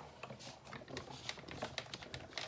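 Manual die-cutting machine rolling a cutting-plate sandwich with a metal die through its rollers: irregular small clicks and crackles, about three or four a second.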